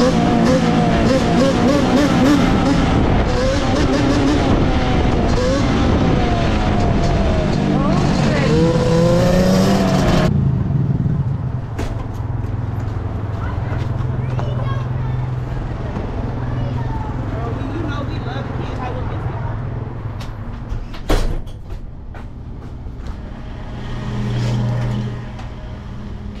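Music with vocals for about the first ten seconds. Then a steady low engine idle, likely the Yamaha Banshee 350's two-stroke twin ticking over at the curb, with one sharp click about twenty seconds in and a brief swell of the hum just before the end.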